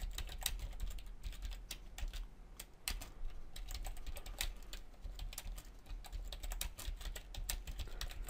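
Computer keyboard typing: a quick, irregular run of key clicks, several a second, over a low steady hum.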